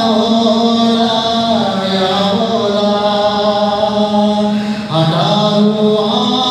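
Music: a voice singing slow, drawn-out notes that glide from one to the next, with a new phrase starting about five seconds in.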